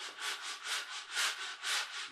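Coarse 60-grit sandpaper worked back and forth by hand in the wooden barrel channel of a rifle stock, about four strokes a second. It is taking wood out of a channel that is still too tight, so the barrel will slip in more easily.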